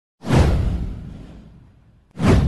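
A whoosh sound effect for an animated intro: a sudden swoosh about a quarter of a second in, with a deep low boom under it, falling in pitch and fading away over about a second and a half.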